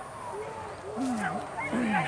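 Men's short drawn-out calls, rising and falling in pitch, twice in the second half, shouted to urge on hunting dogs during a wild-boar hunt.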